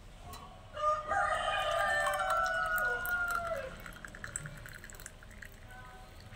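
A rooster crowing once, starting about a second in and lasting some two and a half seconds, its pitch dropping at the end. Under it is the softer splash of a drink being poured from a jug into a glass.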